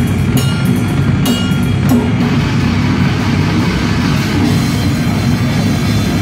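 Death-grind band playing live at full volume, with the drum kit to the fore over a heavy low rumble of bass and guitar. Separate sharp cymbal and drum hits stand out for the first two seconds, then the cymbals blur into a continuous wash.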